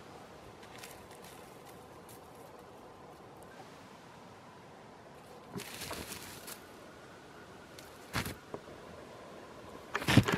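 Quiet open-air background with about a second of rustling close to the microphone near the middle, as a chamois moves through the tussock grass right up to the camera. A short sharp knock follows about two seconds later.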